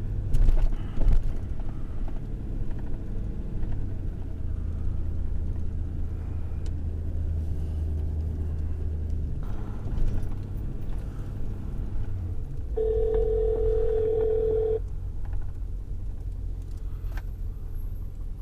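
Truck cab while driving: steady low engine and road rumble, with a couple of knocks about a second in. Past the middle, a telephone ringback tone sounds once for about two seconds as an outgoing call rings.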